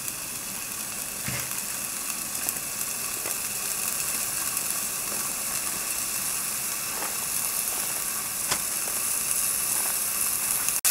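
Thin-sliced beef sizzling in a frying pan over a canister gas stove: a steady hiss that grows slightly louder, with a few faint clicks.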